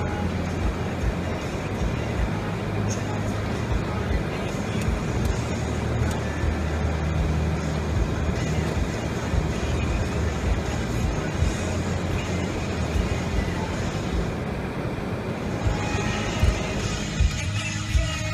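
Road noise of a car being driven, a steady low rumble with tyre hiss, mixed with music. About two seconds before the end the noise thins and clearer music with held notes comes forward.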